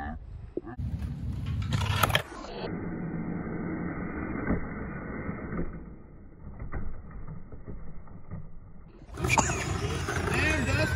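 Skateboard wheels rolling over concrete and brick pavers, a low rumble broken by a few sharp clacks of boards hitting the ground. For most of the middle stretch the sound is muffled.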